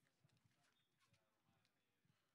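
Near silence, with only very faint scattered clicks.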